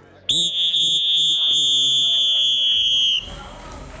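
A coach's whistle blown in one long, steady, shrill blast of about three seconds, cutting off near the end.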